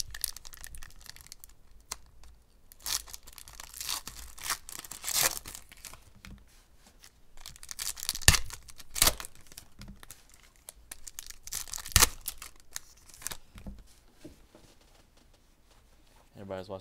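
Foil wrappers of Panini Contenders football card packs being torn open by hand: crinkling foil with several sharp rips, the loudest a little after eight seconds and at about twelve seconds.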